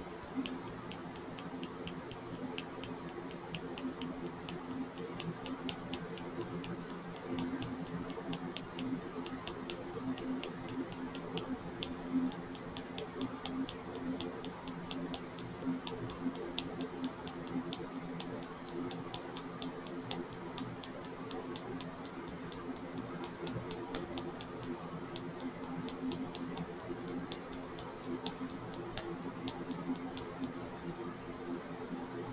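Quick light ticks, several a second with short pauses, of a small plastic mica-powder container tapping against a plastic funnel in a nail polish bottle's neck, knocking the powder down into the bottle.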